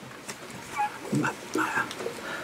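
A few short, quiet, high-pitched vocal sounds and murmurs from people in a small studio, much softer than the talk around them.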